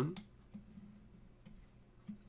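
A few faint clicks from a computer mouse over a low, steady hum.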